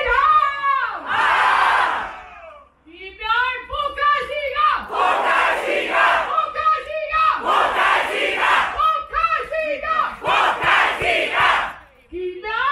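Call-and-response chant: a woman's voice chants over the PA, and a crowd shouts back after each line. The crowd answers about four times, each shout about a second long.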